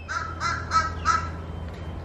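A bird calling: four short calls in quick succession, over a faint steady low hum.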